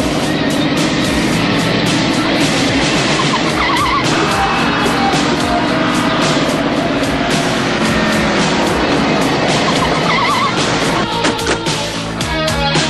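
Dramatic cartoon background music mixed with a steady, engine-like noise effect. A short warbling electronic tone sounds twice, about three and a half and ten and a half seconds in.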